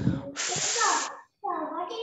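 A short hiss lasting about half a second, with a child's muffled speech sounds around it, heard through a video call's audio.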